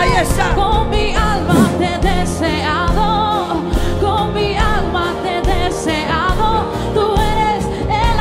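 Live worship music: women singing into microphones, one sustained sung line after another, over band accompaniment that includes a keyboard.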